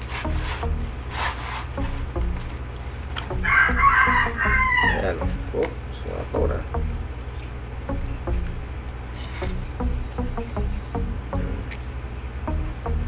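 One long, loud call from a bird, about a second and a half, that falls away in pitch at the end. Light clicks of a plastic box being handled run under it.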